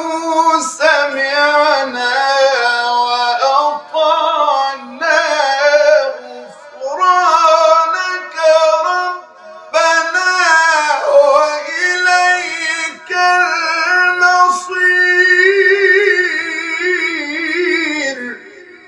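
A solo male reciter chants the Quran in the melodic, ornamented style of tajweed recitation. He holds long notes whose pitch wavers and winds, broken by a few short breaths, and the phrase closes near the end.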